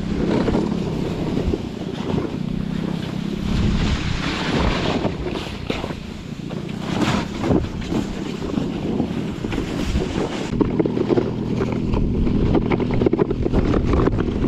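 Wind buffeting the action camera's microphone as a snow kneeboard is towed at speed over snow, with the rush of the board over the snow and scattered knocks from bumps. Under it, a steady low engine drone comes and goes from the Polaris Hammerhead GTS 150 go-kart pulling on the tow rope ahead.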